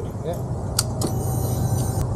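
A motorcycle engine idling with a low, steady rumble, and a single sharp click just under a second in.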